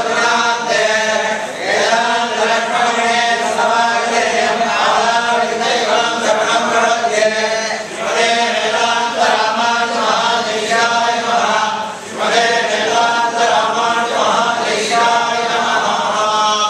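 Several men chanting together in unison, a continuous Hindu temple recitation with brief dips about eight and twelve seconds in.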